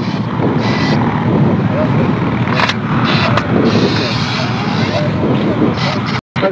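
Loud, steady engine and wind noise outdoors, with faint voices in the background and two sharp clicks a little under a second apart midway through, as hands work the hatch of a Soyuz descent module.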